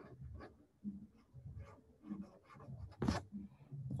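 Watercolour brush working paint onto sketchbook paper: a run of short, faint brushing and scratching strokes, with one louder brief rustle about three seconds in.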